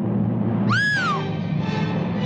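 A young woman's short, high scream, its pitch rising then falling, a little under a second in, over dramatic orchestral film music with timpani.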